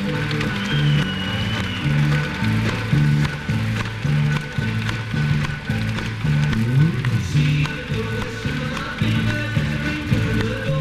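Live rock band with banjo playing through a lo-fi concert recording, a bass line of short repeated notes carrying the low end and sliding upward about seven seconds in.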